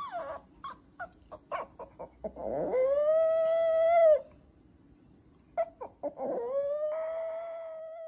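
Small white dog howling twice. Each howl rises in pitch and then holds steady for about two seconds. Short yips come before the first howl, and one more comes just before the second.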